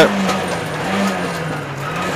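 Rally car's engine heard from inside the cockpit, holding a fairly steady note that rises slightly about a second in, dips, then climbs again, with road and cabin noise underneath.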